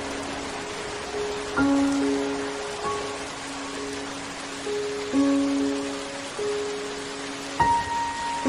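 Slow, soft instrumental background music: held notes that are struck afresh every few seconds, over a steady hiss.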